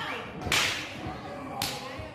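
Two sharp open-hand chops slapping on a wrestler's bare chest. The first, about half a second in, is the louder; the second comes near the end.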